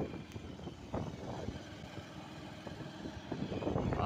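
Motorcycle on the move: a steady low rumble of engine and road noise, with a few brief louder gusts.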